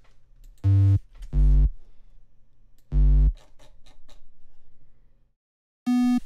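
Three short, loud synthesizer notes from a software synth in Ableton Live, each a tone with many overtones, sounding as MIDI notes are auditioned one by one while a chord progression is built. Faint clicks fall between them, a low drone fades and stops about five seconds in, and another note begins right at the end.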